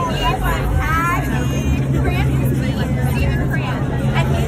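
Several people talking and chatting at once in a group, over a steady low hum of a vehicle engine.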